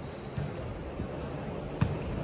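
Volleyball being struck during play in an echoing indoor gym: a couple of soft knocks, then one sharp, loud hit on the ball near the end.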